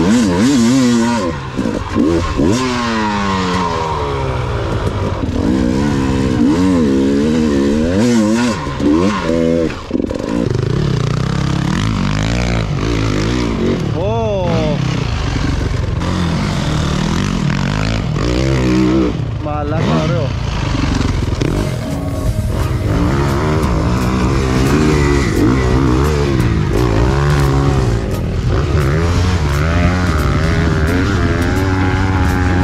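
Enduro dirt bike engines revving hard up and down under load in loose sand, their pitch sweeping up and falling back again and again.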